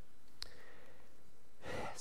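A man's short in-breath near the end of a pause in speech, preceded about half a second in by a single small click.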